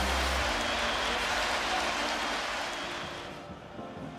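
Football stadium crowd cheering a goal, a dense, even noise that fades out from about three seconds in.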